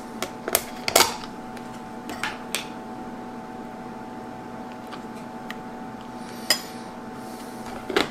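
Kitchen handling sounds: a few sharp clicks and taps as a plastic yogurt tub is opened and a metal spoon scoops yogurt into a glass bowl, the loudest about a second in, over a steady low hum.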